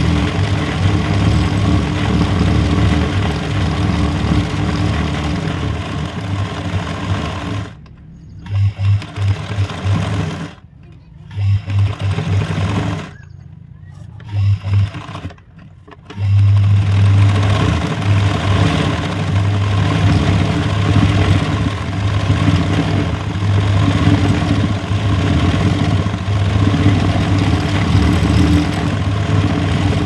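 Sewing machine running at a steady speed, stitching free-motion embroidery as the hooped fabric is moved under the needle. In the middle it stops and restarts several times in short bursts, then runs steadily again.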